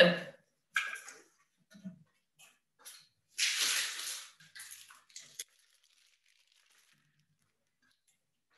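Rustling and scraping of a person getting up and moving away from a desk microphone: a few light knocks, one louder scrape lasting under a second about three and a half seconds in, a few smaller rustles, then the noises stop about five and a half seconds in.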